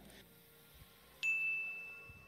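A single high chime about a second in: one clear tone that starts sharply and rings on, slowly fading. Before it there is near silence.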